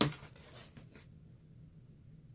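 Cardboard box flaps being pulled open by hand: a sharp scrape of cardboard at the start, then a few fainter rustles within the first second.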